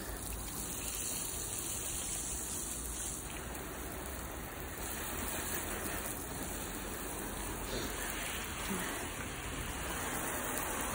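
Water from a garden hose spray nozzle rinsing wash foam off a car's bodywork: a steady hiss of spray hitting the paint and glass.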